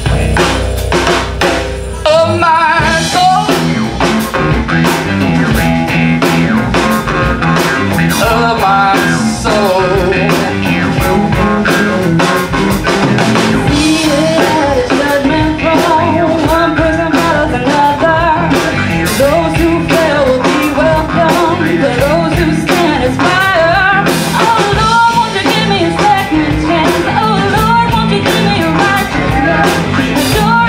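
Live band playing loudly: electric guitar and drum kit with singing over them.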